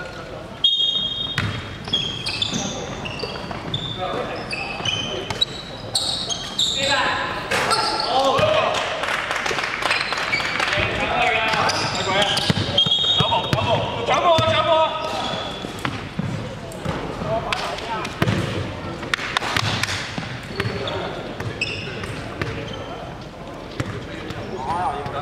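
Basketball game on a hardwood court: the ball bouncing, with short high sneaker squeaks on the floor and players calling out to each other.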